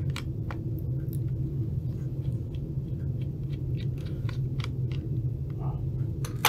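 Scattered light clicks and taps of a small screwdriver and small parts against an opened laptop's chassis and components, over a steady low hum.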